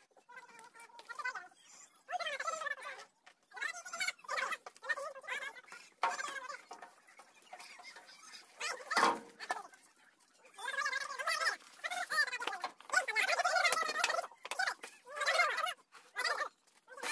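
Domestic fowl calling repeatedly in short warbling bursts. There is one dull thump about nine seconds in.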